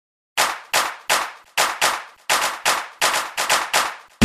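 Intro of an electronic dance remix: about a dozen sharp percussive hits in a stuttering rhythm, each dying away quickly, with no bass beneath them.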